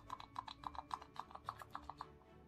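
A bottle of liquid foundation being shaken hard, giving a quick, even rattle of short clicks, about eight a second.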